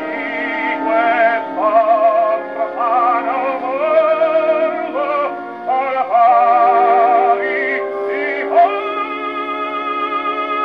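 An acoustic gramophone plays a shellac record of an operatic baritone singing with orchestra. The voice has a wide vibrato and the sound is thin and narrow-range. Near the end the voice rises to a long held high note over a sustained orchestral chord.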